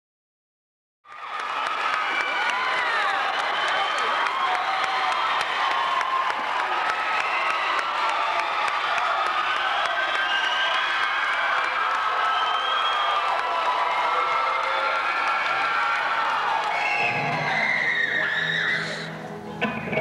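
A gymnasium crowd of students cheering and yelling, a dense echoing din of many voices. Near the end the crowd noise drops and an electric guitar through a tube amp begins to sound low notes.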